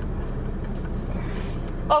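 Steady low hum of a parked car's idling engine, heard from inside the cabin.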